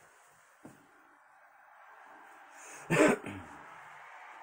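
A man's single short cough about three seconds in, with a smaller catch just after it, over low room tone.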